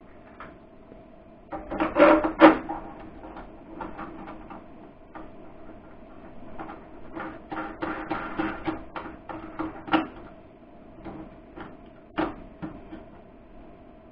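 Hands working hardware into the side of a metal inverter case: irregular clicks, scrapes and small knocks, loudest about two seconds in and busy again around eight to ten seconds, with a steady electrical hum underneath.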